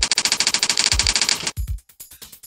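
Typewriter-style typing sound effect: a rapid, even run of clicks, about twenty a second, that stops about one and a half seconds in. It plays over background music with a low steady beat.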